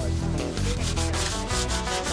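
Hand sanding of a wooden bench plank with sandpaper: quick, irregular back-and-forth rubbing strokes. Background music plays underneath.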